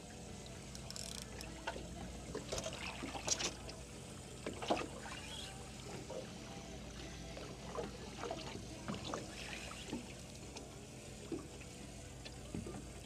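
Water lapping against the side of an aluminium boat hull in small irregular slaps and trickles, quiet throughout, while a fish is played on a spinning rod.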